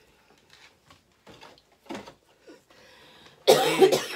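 A person coughing: one loud cough burst near the end, after a few faint short sounds.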